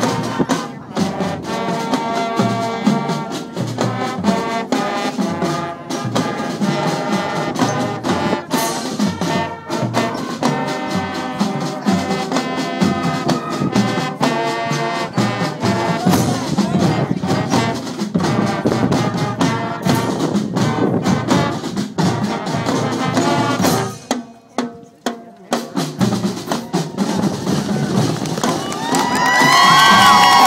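Junior high school marching band playing a piece on brass and drums, trumpets and trombones over the drum line. The music drops away briefly for a couple of seconds late on, then resumes, and crowd cheering and whoops start as the piece ends.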